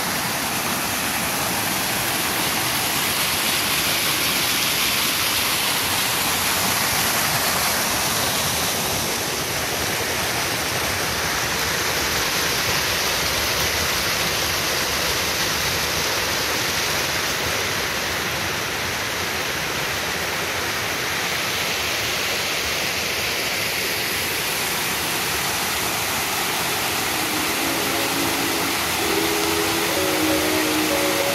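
Steady rush of a small waterfall, about a 3 m drop, pouring over rock into a shallow stream. Faint music comes in near the end.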